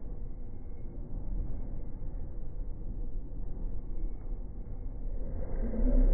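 Running noise of a moving train heard from on board, slowed down to slow-motion speed so that it comes out as a deep, muffled rumble. It grows louder near the end.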